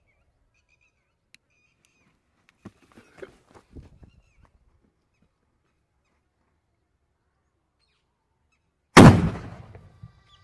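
A VIP sutli bomb, a twine-wrapped firecracker, going off inside a snake burrow in an earth bank: a few faint scuffs, then one sudden loud blast about nine seconds in that dies away over about a second.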